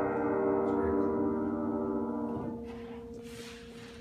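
The last chord on a mid-1980s Baldwin five-foot baby grand piano ringing out and slowly fading. About two and a half seconds in most of the notes are damped, leaving a couple of lower notes sounding faintly.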